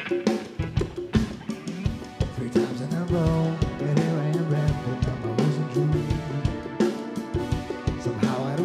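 Live band playing: a drum kit beat with hand percussion, and a low, sustained melodic line that comes in about three seconds in.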